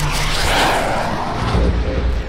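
Jet flyby whoosh sound effect: a rushing swell that peaks about half a second in and fades out, over a deep low rumble.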